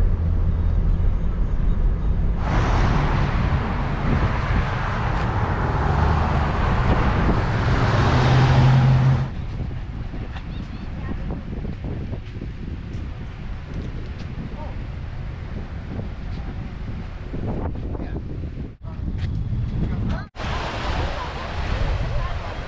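Outdoor waterfront ambience across several short clips: wind rushing on the microphone and road traffic noise. The loud rush cuts off abruptly about nine seconds in and gives way to a quieter hiss. In the last second or two, small waves wash onto the beach.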